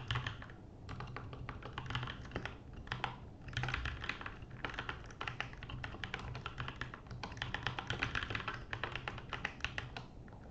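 Typing on a computer keyboard: runs of quick keystrokes broken by short pauses, about a second in and again around three seconds.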